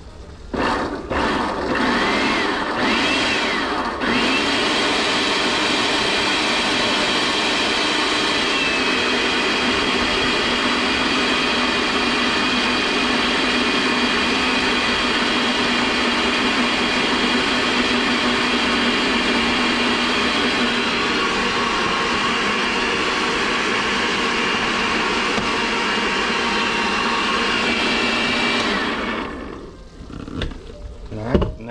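Countertop blender puréeing a tomato sauce: pulsed several times in the first few seconds, then running steadily for about twenty-five seconds before the motor stops near the end.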